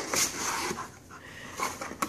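A German Shepherd panting and pawing through a cardboard box of packaged items, rustling and knocking the packages.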